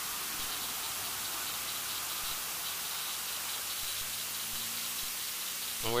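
Steady hiss with no clear events. A faint low hum joins in about two-thirds of the way through.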